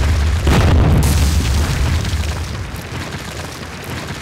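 Cinematic boom-and-debris sound effect for a wall being blasted apart: a deep rumbling boom with a burst of crashing rubble about half a second in, then a rumble that slowly fades.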